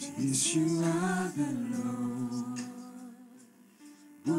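Worship song sung by voices: one slow phrase of held notes that trails off about three seconds in.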